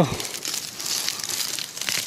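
Dry grass and plant stalks rustling and crackling as a hand grabs and pulls at a leafy plant, with scattered sharp crackles.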